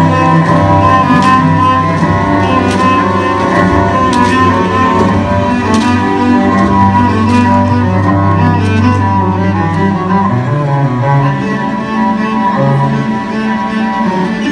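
Large ensemble of cellos and double basses playing together in a bowed string piece, a sustained low bass note under the moving upper parts until about ten seconds in. Sharp knocks come about every second and a half during the first half.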